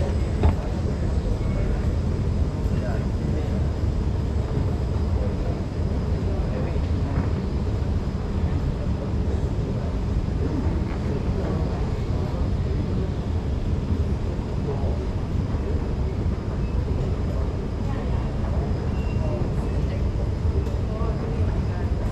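Escalator running steadily downward, an even low rumble of its moving steps and drive, with a brief knock about half a second in.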